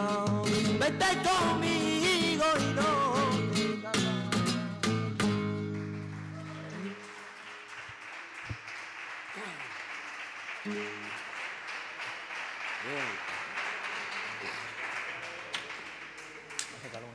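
A flamenco singer's wavering, ornamented cante over strummed Spanish guitar closes a soleá, ending with final guitar strokes about five seconds in. Audience applause follows and runs on.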